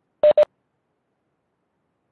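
Two short, quick electronic beeps of one pitch, a moment apart, with dead silence after them.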